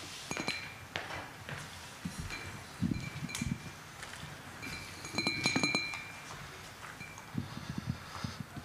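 Microphone being handled at its stand: scattered light knocks and a few short metallic clinks, about three seconds in and again about five seconds in, over quiet room tone.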